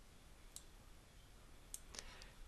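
Two faint computer mouse clicks, about half a second in and again near the end, over near silence.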